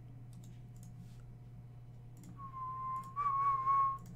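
A person whistling one held note for about a second and a half, starting a little past halfway, with a slight lift in pitch midway. Faint clicks come before it, over a low steady hum.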